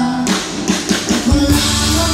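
Live rock band with electric guitars playing loud. A run of quick sharp hits leads into the full band, with heavy bass coming in about a second and a half in.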